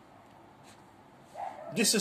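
Quiet room tone, then a voice starts speaking loudly near the end.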